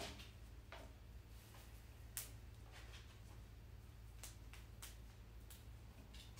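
Faint crackles and small snaps of leaves and side shoots being stripped by hand from a wax flower stem, about seven short sounds spread through, the sharpest about two seconds in, over a low steady hum.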